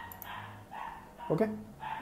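A dog whining in the background in several short, faint, high-pitched cries.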